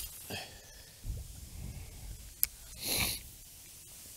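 Quiet outdoor sound with a low rumble on the microphone, one sharp click about two and a half seconds in, and a short breathy burst about half a second after it.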